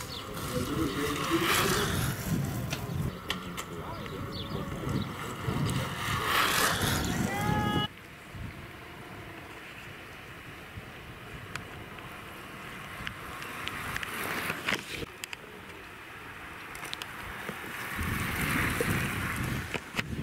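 Outdoor roadside sound with faint voices in the background. About eight seconds in it drops abruptly to a quieter steady hiss, which swells briefly near the end.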